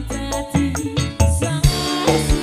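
Live dangdut band music with a steady percussion beat and deep sustained bass notes, a woman singing into a microphone over it.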